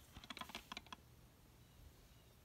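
Faint, quick clicks and taps of a plastic DVD case being handled and turned over in the hands, clustered in the first second and then stopping.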